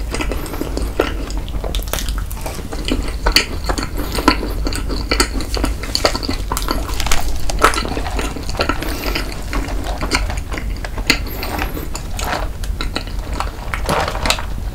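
Close-miked chewing of an overstuffed macaron: a steady run of soft, wet mouth clicks and smacks.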